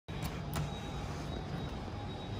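Two light clicks, about a quarter of a second apart near the start, as an Otis lift's hall call button is pressed, over a steady low hum.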